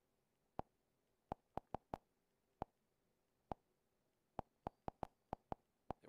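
Nvidia Shield Android TV menu navigation clicks: about fourteen short, sharp ticks at uneven spacing, some in quick runs, as the menu focus steps through the settings and app list.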